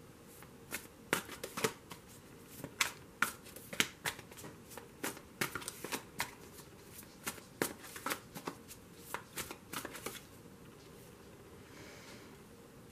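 A tarot deck shuffled by hand: an irregular run of sharp card snaps and flicks that stops about ten seconds in.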